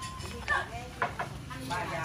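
Indistinct talking by people nearby, in short phrases, with a couple of brief knocks about half a second and one second in.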